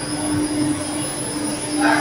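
Rotary kiln and its gear-motor drive running: a steady industrial hum with one constant tone held beneath an even machine noise.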